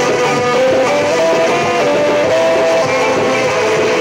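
A ska band playing a song: guitar with a full band behind it and a lead melody line that holds notes and steps up and down in pitch.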